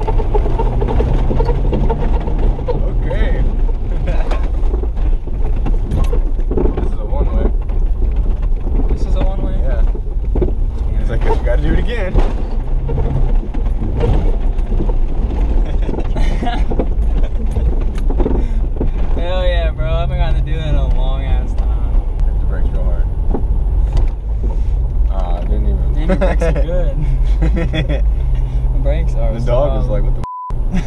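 Cabin noise of a moving 1994 Jeep Cherokee: a steady low drone of engine and road. Voices and laughter come and go over it, most clearly around the middle and near the end.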